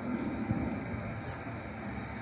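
Steady low rumble of distant road traffic and aircraft, a background that is not quiet.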